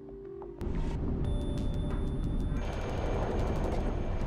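Background music, then from about half a second in a loud, dense low rumble of wind buffeting the microphone outdoors, with the music still playing over it.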